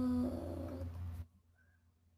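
A woman's singing voice holding a long note that turns rough and creaky, then cuts off a little over a second in, leaving near silence.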